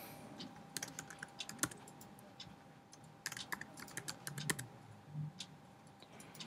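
Typing on a computer keyboard: two short runs of keystrokes, the second starting about three seconds in.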